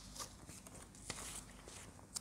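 Faint handling noise of a printed photo being lowered and set down: a few light ticks, then a short paper rustle about a second in.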